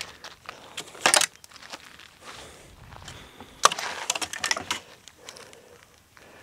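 Irregular clicks and clunks of hard parts being handled as an agricultural spray drone is worked on its wheeled stand, with two sharper knocks about a second in and about three and a half seconds in, the second followed by a quick run of smaller clicks.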